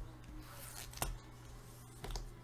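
Faint handling noise on a tabletop, with one sharp click about a second in.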